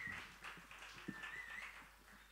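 Faint crowd noise between songs at a small live gig: two short wavering whistles, one at the start and one about a second in, over scattered knocks, fading towards the end.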